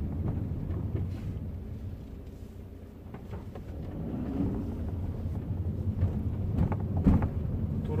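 Volkswagen Caddy heard from inside the cabin while driving slowly: a steady low engine and road rumble that eases off briefly and then builds again, with a light knock about seven seconds in.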